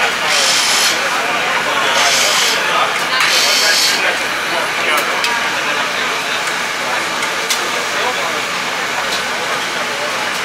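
Three short hisses of spray at a race car's front brake hub in the first four seconds, over a steady background of pit noise.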